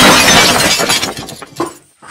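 Torn plastic blister packs and cardboard backing swept off a table in one go: a sudden loud crackling crash that fades away over about a second and a half.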